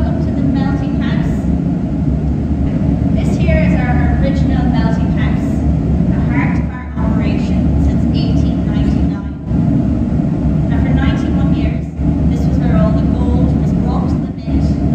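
A woman speaking over a loud, steady low rumble.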